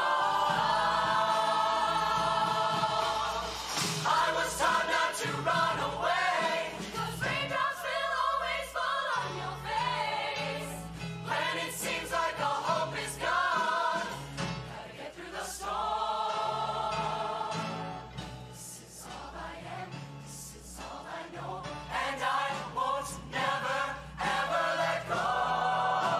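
Show choir singing in harmony, many voices together, with a quieter stretch about two-thirds of the way through before the full sound returns.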